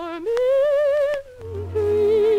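Music from a 1945 orchestral song recording: a soprano voice with wide vibrato slides up to a long held high note over the orchestra, breaks off briefly, then goes on with a lower held note. Two faint clicks sound during the held note.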